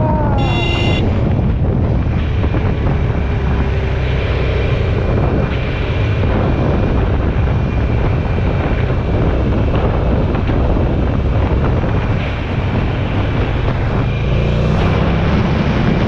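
Wind buffeting a helmet-mounted microphone over the steady rumble of a motorcycle engine while riding in traffic. A short high-pitched beep sounds about half a second in, and the engine's pitch rises briefly near the end.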